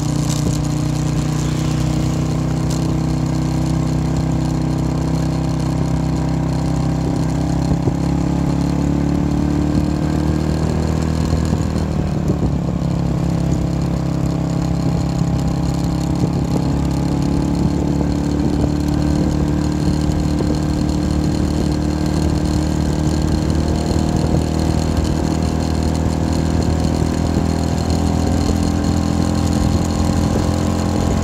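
Motorbike engine running under way, its pitch sinking a little about ten seconds in, then climbing again as it picks up speed.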